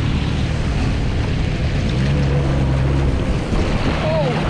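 Jet ski engine running at speed, with water rushing and spraying past and wind on the microphone. The engine note shifts and grows stronger about halfway through.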